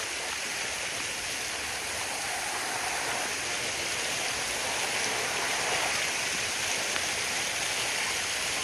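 Small waterfall cascading over rocks close to the microphone, a steady rush of falling and splashing water.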